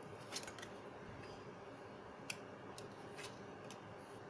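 Tarot cards being handled and laid down on a cloth-covered table: several faint, crisp snaps and slides of card stock, spread through, over a low steady hiss.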